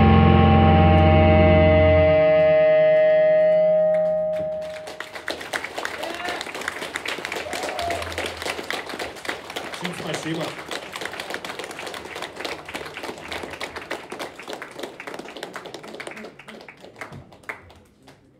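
A rock band's final held chord on guitar and bass rings out and fades over the first four seconds or so. Then the audience claps and calls out, the applause dying away near the end.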